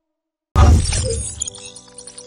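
Logo-reveal sound effect: silence, then about half a second in a sudden heavy hit with deep bass and a bright, crackling high edge, fading into held electronic tones.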